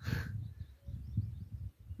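Low, uneven rumble of wind on the microphone, with faint high bird chirps about half a second in.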